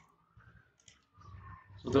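A few faint computer mouse clicks, like button presses confirming a dialog in CAD software.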